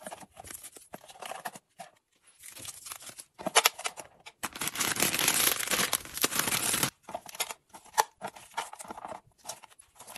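A thin plastic wrapper being torn open and crinkled in the hands, a loud rustling stretch of about two and a half seconds starting midway through. Before and after it come light scattered taps and rustles of items being handled and set into a plastic container.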